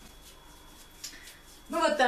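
Quiet room with a faint thin high whine and one light click about halfway through; a woman starts speaking near the end.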